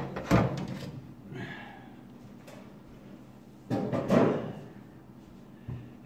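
Sheet-metal outer case of a microwave being worked loose and lifted off its lip: a sharp metal knock just after the start, then a louder clatter of the panel about four seconds in.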